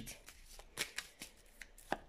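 A deck of tarot cards being shuffled by hand: a few faint, separate clicks of the cards.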